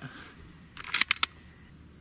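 A quick cluster of three or four sharp clicks about a second in, against a quiet outdoor background.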